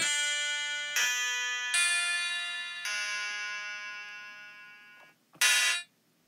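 Clavinet patch in the Beatmaker 2 app, played from a Korg microKEY Air keyboard: four notes and chords struck about a second apart, each ringing and slowly fading. Near the end comes one short, sharp chord that is cut off.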